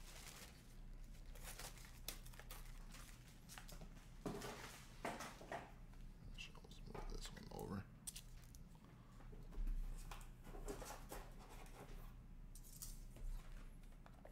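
Scattered rustling, crinkling and soft clicks of trading cards and card-box packaging being handled, over a steady low hum.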